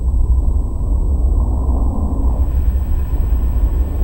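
Deep, steady rumble, a documentary sound effect for magma pushing up through the ocean floor.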